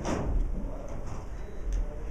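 A single sudden knock right at the start, fading within a fraction of a second, then a steady low room rumble.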